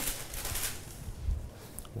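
A sheet of baking paper rustling for under a second as it is lifted off rolled pastry dough.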